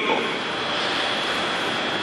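Steady, even hiss of background room noise with a faint steady high tone.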